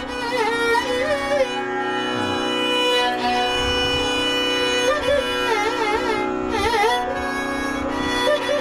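Carnatic raga alapana in Ananda Bhairavi: a free-flowing melody line with sweeping oscillating ornaments (gamakas) over a steady tanpura drone, with no drum. The melody holds a long note in the middle before the ornamented phrases return.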